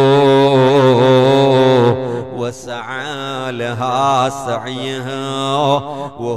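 A man's voice chanting a melodic recitation. It holds one long steady note for about two seconds, then goes on in shorter phrases that rise and fall.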